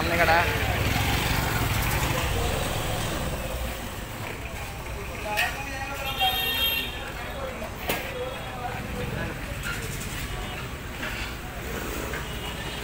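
Busy fuel-station forecourt: a low steady rumble of motorcycle and vehicle engines, louder in the first few seconds, with scattered voices. About six seconds in, a short high horn-like toot sounds.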